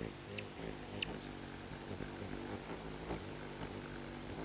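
Hummingbird wings humming as birds hover and dart around a feeder, the hum swelling and fading as they come and go. Two short, high chip notes come about half a second and a second in.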